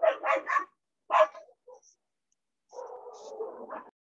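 A dog barking over a video-call microphone, three quick barks and then a fourth about a second in, followed by a quieter, steadier sound near the end.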